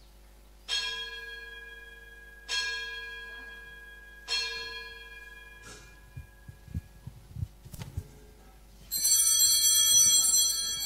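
A bell struck three times at an even pace, each stroke ringing out and slowly dying away: the altar bell marking the elevation of the chalice at the consecration. Near the end a louder, brighter ringing sound with many high tones comes in.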